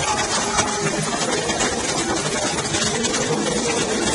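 Water jets of a large musical fountain, a steady, loud rushing of water with no clear rhythm.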